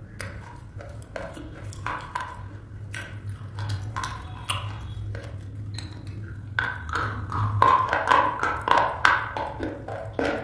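Close-miked biting and chewing of a brittle slate pencil: scattered sharp snaps in the first half, then dense, louder crunching from about two-thirds of the way in.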